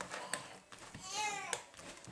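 A child's high voice calls out briefly, wavering in pitch, about a second in. Around it come a couple of light clicks from a fork stirring dough in a plastic mixing bowl.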